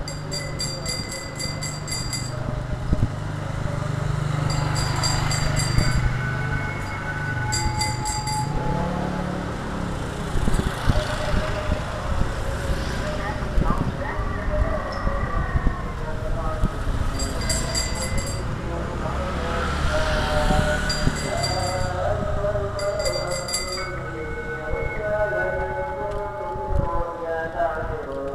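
A street vendor's cart rolling along with a steady low rumble, broken by repeated short bursts of high metallic ringing. A voice comes in near the end.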